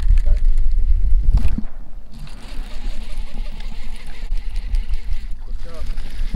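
Wind buffeting the microphone with a deep rumble for about the first second and a half, with a short knock in it, then a steady hiss of wind for the rest.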